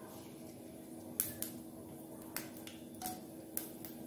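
Mustard seeds crackling in hot oil for a tadka: a handful of separate sharp pops, about five in four seconds, over a faint steady hum.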